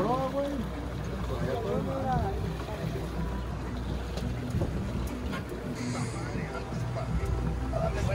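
Boat engine running low and steady, with voices talking in the first couple of seconds and some wind on the microphone.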